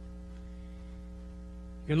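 Steady electrical mains hum, a low tone with a string of higher overtones, running through a pause in speech. A man's voice comes back in right at the end.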